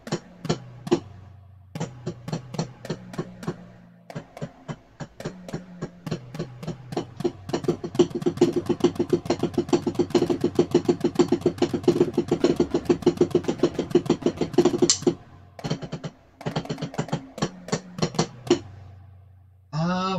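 Electronic drum pattern playing back, fast sharp hits over a steady low bass note. The hits build to a dense roll in the middle, break off briefly, then pick up again.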